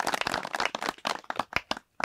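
A group of people clapping in a brisk, uneven patter of many hand claps, which dies away about one and a half seconds in.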